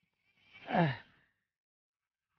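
A man's short sigh, falling in pitch, lasting about half a second.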